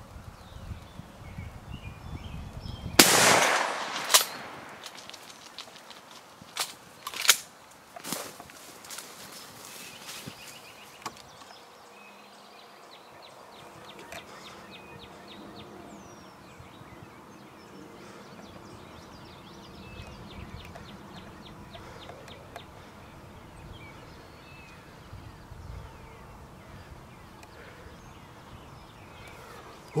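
A single shotgun shot about three seconds in, loud with a rolling echo, fired at a gobbler. A few sharp knocks follow over the next several seconds, then quiet outdoor background.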